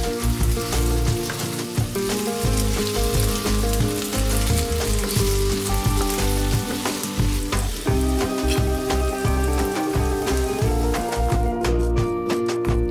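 Diced potatoes sizzling as they fry in oil in a nonstick pan while being stirred with a wooden spatula. Background music with held notes plays underneath.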